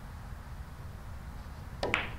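Pool cue striking the cue ball, then billiard balls colliding: two sharp clicks close together near the end, after a stretch of faint room tone.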